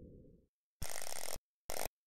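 A deep space-ambience drone fades out, then after a short silence come two bursts of hissing electronic static, one about half a second long and a shorter one just after, as a title-card sound effect.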